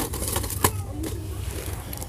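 A clear plastic tube of small silver ball ornaments being picked up and handled: plastic rustle with two sharp clicks about two-thirds of a second apart, over a steady low rumble.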